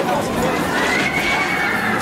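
Outdoor crowd chatter, with a long high-pitched scream starting about a second in. It rises slightly, then holds steady.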